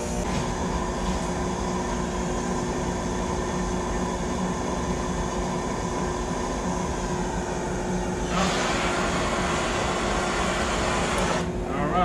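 Electric air blower feeding a homemade pipe burner runs with a steady humming rush of air. About eight seconds in, a louder hiss joins it for about three seconds and then cuts off suddenly. The burner does not light.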